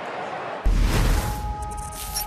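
Broadcast crowd noise, cut about two-thirds of a second in by a closing logo sting: a sudden deep whooshing hit that fades into held steady synth tones.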